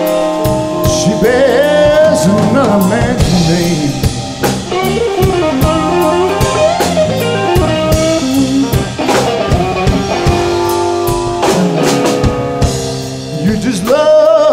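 Live blues band playing an instrumental passage: an electric guitar lead with bent, wavering notes over drum kit, bass guitar and Hammond organ, with cymbal and snare hits keeping the beat.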